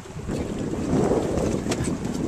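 Wind buffeting the microphone out on open water, a low rumbling noise that swells about half a second in.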